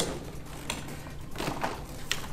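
A few light plastic clicks and knocks as the vacuum hose and wand are pulled free from a Clarke upright auto floor scrubber.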